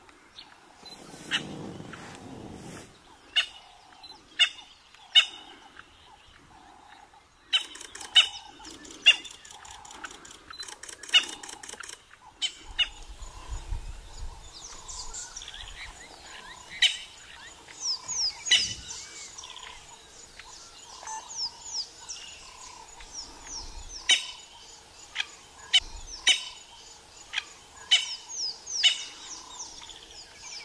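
Birds calling in the bush: sharp chip notes repeated at irregular intervals, with a run of quick falling whistles from about halfway on.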